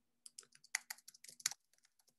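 Faint typing on a computer keyboard: a quick run of keystrokes lasting just over a second, then stopping.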